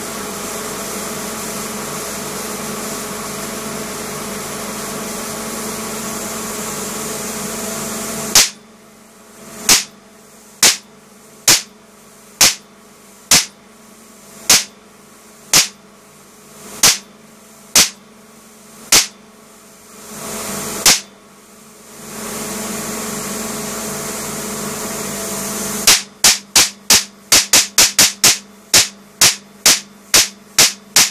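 A homemade oil-filled high-voltage capacitor bank, charged from a flyback supply, discharging across a spark gap. A steady electrical buzz runs for about eight seconds. Then come loud sharp cracks about once a second, some led in by a rising buzz as the bank recharges. Near the end, after another stretch of buzz, a fast run of cracks comes several per second.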